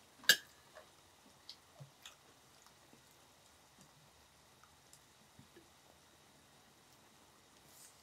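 Chopsticks clicking sharply once against a plate just after the start, followed by a few faint ticks of picking at food, then near quiet.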